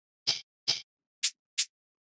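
Shaker drum samples auditioned one after another in a music program's browser: four short shaker strokes, the last two shorter and brighter than the first two.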